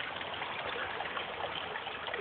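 Small gully stream running steadily, a continuous trickle of water.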